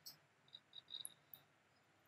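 Near silence: faint room hiss with a few tiny, short high-pitched ticks.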